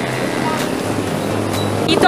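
Steady road traffic noise from the street below the overpass: a continuous rumble and hiss of passing vehicles, with a low engine hum.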